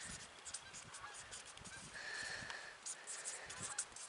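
Faint scratching and squeaking of a permanent marker writing on a plastic plant tag, with a longer thin squeak about two seconds in.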